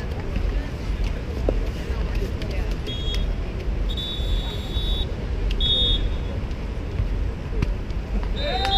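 Steady low outdoor rumble of wind on the microphone at an open-air beach volleyball court, with faint crowd hubbub. Short, high, steady whistle-like tones sound about three seconds in, again at four to five seconds, and near six seconds.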